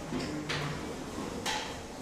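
Two sharp knocks about a second apart from the 3 lb combat robots, over a low steady hum that fades in the first half.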